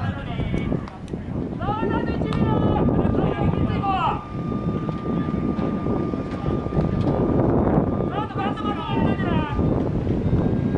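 Wind buffeting the microphone in a steady low rumble, with players shouting across a baseball field in two bursts, about two seconds in and again near the end. A faint steady high tone runs under most of it.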